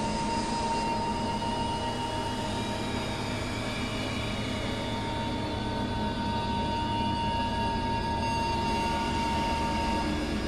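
Experimental synthesizer drone: a dense, steady wash of noise and layered held tones, with one bright high tone sustained over it that thins out mid-way and returns.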